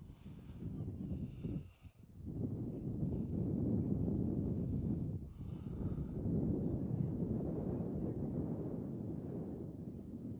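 Low, uneven rumbling of wind buffeting an outdoor microphone, easing briefly about two seconds in and again around five seconds, with faint distant voices.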